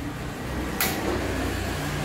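Portable gas stove's ignition knob turned: one sharp click a little under a second in, over a steady low hum.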